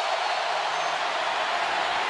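Stadium crowd noise: a large crowd making a steady, even wash of sound with no single voice standing out.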